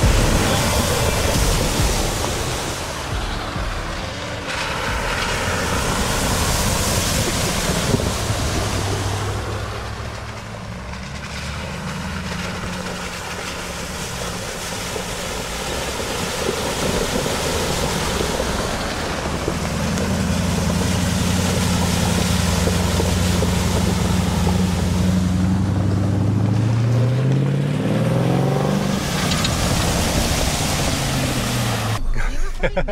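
Off-road SUVs, among them a Jeep Wrangler and a Lexus GX, driving one after another through a shallow creek crossing: engines running while water splashes and rushes around the tyres, with some wind on the microphone. Near the end an engine's note rises as a vehicle pushes through the water.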